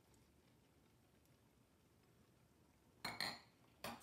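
Near silence, then about three seconds in two brief clinks of metal against a Dutch oven.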